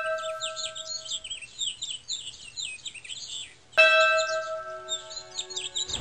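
Birds chirping busily throughout. A ringing, bell-like struck note dies away at the start, and a second one is struck about four seconds in and rings on.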